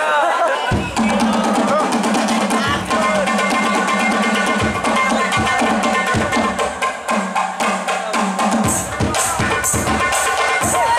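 Rebana ensemble of Javanese frame drums and a large bass drum starting to play a little under a second in, keeping a brisk, steady run of drum strokes under deep bass-drum beats. Bright, high strokes join near the end.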